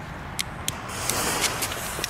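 A lighter clicks a couple of times at the fuse of a crackling ground firework. From about a second in, the lit fuse hisses and spits sparks.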